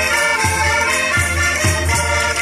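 Traditional Minho folk dance music: a sustained melody over a bass drum beating a little more than twice a second.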